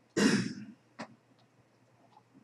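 A man clears his throat with one loud cough of about half a second, followed by a brief, quieter second sound about a second in.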